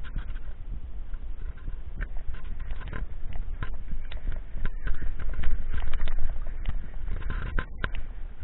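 Riding noise from a mountain bike on a bumpy dirt and grass singletrack, picked up by a bike-mounted action camera: wind buffeting and a low rumble on the microphone, with frequent clicks and rattles as the bike and camera mount jolt over the ground.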